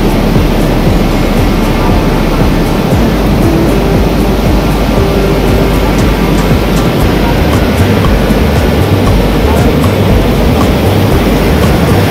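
The Ganga (Bhagirathi) river in violent flood: a loud, steady rushing of torrential muddy water that never lets up.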